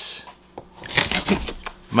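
Handling noise: brief rustling with a cluster of quick sharp clicks about a second in.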